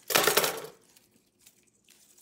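A short metallic clatter as scissors cut through the wire stem of an artificial flower pick, one loud burst just after the start that fades within about half a second.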